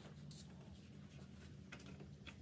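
Near silence: garage room tone with a steady low hum, and a few faint clicks and rustles from hands working in the car's engine bay.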